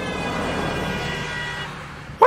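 A horn sounding one long steady note that fades out near the end, over a haze of noise.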